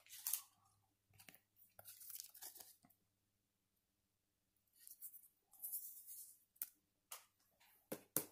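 Near silence with faint, scattered rustles and light clicks of a trading card being handled, in a few small clusters.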